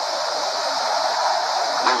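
Steady hiss of background noise, even and unbroken, in a pause in a man's spoken recitation. His voice comes back right at the end.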